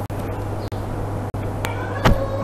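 Steady low electrical hum over background hiss, broken by a few brief dropouts, with a click and a short pitched sound that glides up and down near the end.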